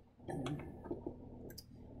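A few light clicks and handling noises of a fan's power plug being fitted into a socket on a home-built battery power outlet panel.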